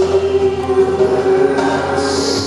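Live music: a woman singing a long held note while playing a Bösendorfer grand piano.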